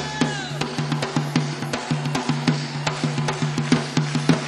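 Live Brazilian samba-rock band in an instrumental break without vocals: drums and hand percussion play a fast, even rhythm over a held bass note.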